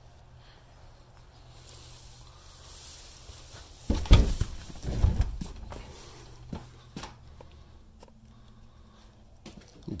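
Footsteps and handling noise of someone walking into a cluttered barn, with two heavy thumps about four and five seconds in and a few sharp knocks and clicks after.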